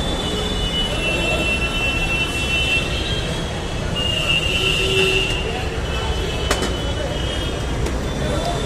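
Very noisy city street: a steady low traffic rumble with background voices, and a thin high-pitched squeal or whine that comes and goes. A sharp click sounds about six and a half seconds in.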